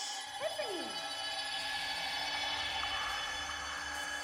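Eerie film-score drone of several steady held tones, with a single falling pitch sweep about half a second in and a low rumble coming in beneath it.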